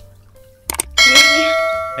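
A click followed by a bright bell ding that rings out and fades over about a second: the sound effect of a YouTube subscribe-and-notification-bell animation.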